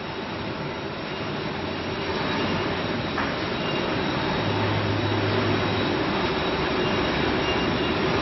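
Wire drawing machinery running steadily: an even mechanical noise with no breaks, and a low hum that stands out for about a second midway.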